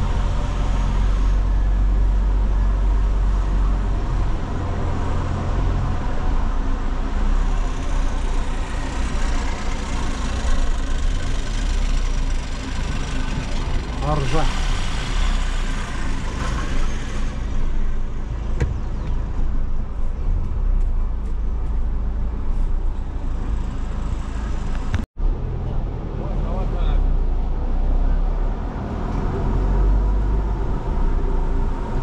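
Car engine and tyre rumble heard from inside a slowly moving car, a steady low drone with faint voices now and then. The sound cuts out for an instant about 25 seconds in.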